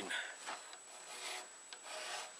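Hand file rasping back and forth on the knife's pivot pin in a few slow, separate strokes.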